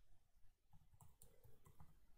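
Faint clicks of computer keyboard keys: a quick run of keystrokes starting a little under a second in, typing a short file name.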